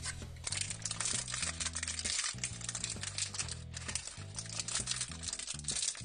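Background music with held low notes, over the crinkling of a folded paper leaflet and a foil blind bag being handled.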